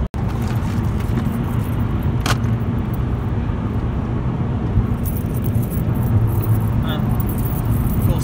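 Steady low rumble of road noise inside a moving car's cabin. Light metallic clinks from a chain and beaded necklace being handled, with a sharp click about two seconds in and a few more clinks in the second half.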